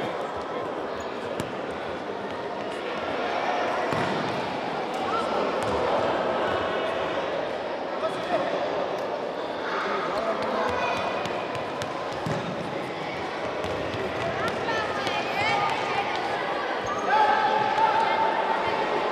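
Futsal ball being kicked and thudding on a wooden sports-hall floor, amid indistinct shouting voices of players and spectators.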